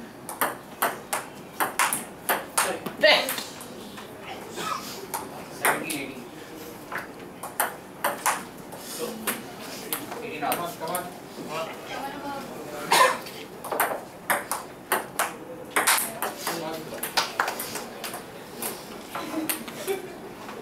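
Table tennis ball clicking back and forth off the paddles and the table in quick rallies, a few hits a second, with short breaks between points. Voices of onlookers come through in the background, most clearly around the middle.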